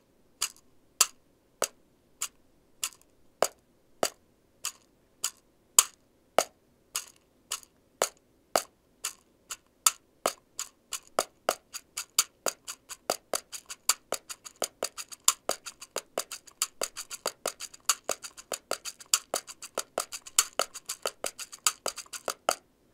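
A pocket cajón, a small hand-held wooden box drum, tapped with the fingertips in a samba rhythm that mixes deeper bass strokes with sharper high strokes. The strokes come about twice a second at first, then pick up to a faster, denser pattern from about ten seconds in.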